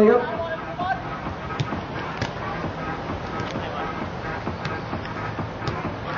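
Ambient sound of a seven-a-side football match: faint voices from the pitch and a few short, sharp ticks over music underneath.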